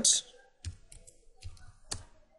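Computer keyboard typing: three separate sharp keystroke clicks spread over about two seconds.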